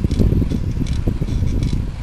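Wind buffeting the microphone and road rumble from a camera travelling along a street, with small irregular rattles and clicks.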